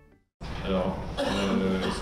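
Near silence at first, then about half a second in the sound of a room cuts in abruptly: a man's voice through a microphone, indistinct, over room noise.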